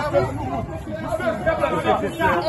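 People talking over one another outdoors, with a steady street noise bed behind the voices.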